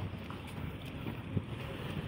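Wind buffeting a handheld phone's microphone on an open seafront: a steady low rumble, with one faint knock about one and a half seconds in.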